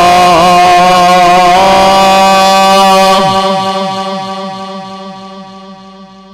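Male Quran reciter's amplified voice in mujawwad tajweed, ornamenting a line and then holding one long steady note that ends about three seconds in. The sound then dies away gradually through the loudspeakers. A steady low hum runs underneath.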